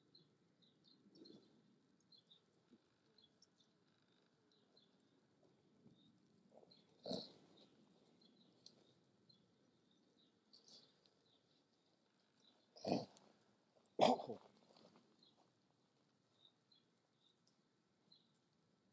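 Three short animal calls, about seven, thirteen and fourteen seconds in, over a faint background of small high chirps.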